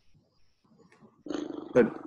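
A pause with near silence, then a person's voice: a drawn-out hesitating sound that runs into the word "but" near the end.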